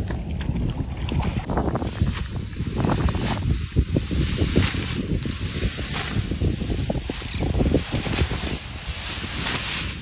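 Wind buffeting the microphone, an uneven gusty rumble.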